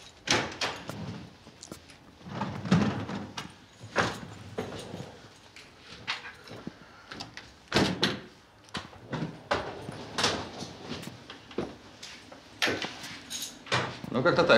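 A flat's front door being opened, with a run of clicks and knocks from the lock and handle, then footsteps and a wheeled suitcase being brought in across the floor.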